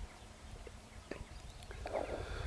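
Quiet outdoor ambience: a low rumble with a couple of faint clicks, one at the start and one about a second in.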